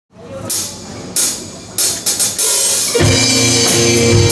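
Live band starting a song: a few drum and cymbal hits ring out over the first two seconds or so. About three seconds in, the guitars, keyboard and drum kit come in together and play on steadily.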